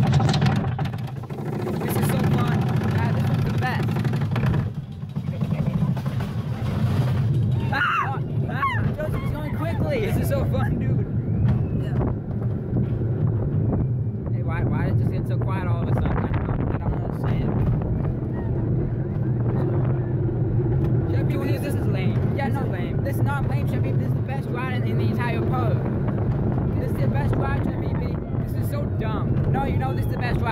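Roller coaster train running on its track, heard from inside the car: a steady low rumble with wind on the microphone, and riders' voices and shouts over it.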